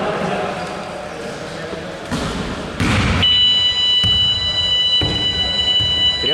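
Voices echoing around a sports hall, then a loud thud about three seconds in. Right after it a steady high-pitched electronic tone starts and holds to the end.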